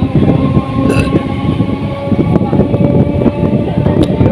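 Electric multiple-unit local train running through a station at speed, heard from on board: a steady rumble and rattle of wheels on track and the carriage.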